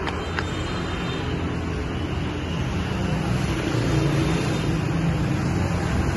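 Steady street traffic noise with a low engine rumble that grows louder from about halfway through.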